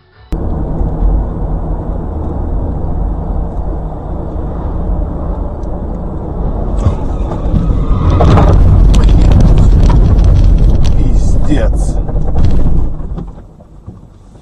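Dash-cam recording inside a moving car: loud, steady road and engine rumble. About eight seconds in it grows louder, with rapid clattering knocks and raised voices as a crash happens beside the car, then dies away about a second before the end.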